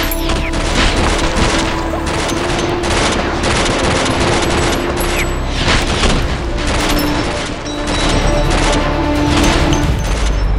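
A long volley of rapid gunfire sound effects, shots packed close together throughout, over background music.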